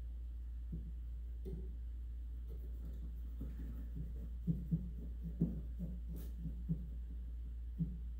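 Soft, irregular wooden knocks from the hammer shafts of an 1883 Steinway Model A grand piano action being flexed up and down by hand on their flange hinges, working tight but sound centre pins loose to spec. The knocks are sparse at first and come more often in the second half, over a steady low hum.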